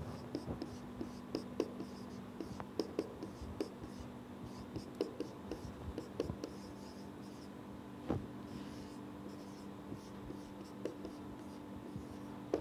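Marker writing on a whiteboard: a string of short, quiet strokes and taps with pauses between them, over a faint steady room hum.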